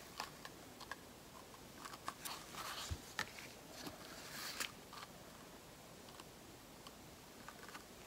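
Faint handling sounds of paint cups as acrylic paint is layered into a clear plastic cup: scattered light clicks and taps of plastic, with a soft thump about three seconds in and a brief rustle about halfway.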